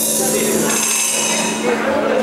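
A band's last chord ringing out under a metallic cymbal-like crash that fades over about a second and a half: the end of a song.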